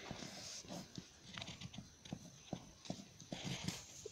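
Pencil drawing on paper: faint scratching with light, irregular ticks and taps as the lead moves across the page.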